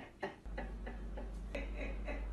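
Regular light ticking, about five ticks a second, over a steady low hum that begins about half a second in.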